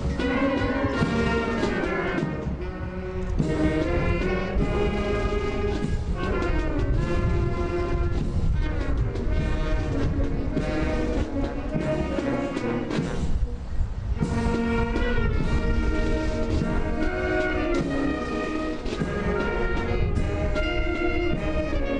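Military brass band playing, brass instruments carrying the tune over a steady low accompaniment, with a brief break about thirteen seconds in.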